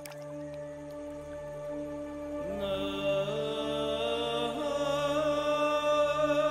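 Background score music: a low sustained drone, joined about two and a half seconds in by a wavering wordless melody line that swells louder.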